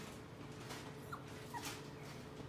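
Eight-week-old dachshund puppies tugging at a plush toy, with two brief high squeaks, one about a second in and one near the end.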